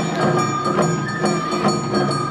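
Suzume odori festival music (hayashi): a bamboo flute holding long high notes over a quick, steady beat of taiko drums and hand gong.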